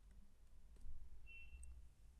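Faint scattered clicks and light taps over a low steady hum, made while handwriting is being added to a digital whiteboard.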